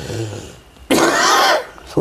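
An elderly man clears his throat once with a short, rough cough about a second in.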